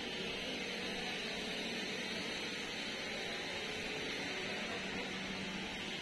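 Steady street ambience: an even hiss with a low background murmur and no distinct events.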